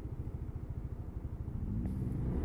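Lexmoto Diablo 125cc scooter's single-cylinder four-stroke engine idling with an even, low putter while stopped.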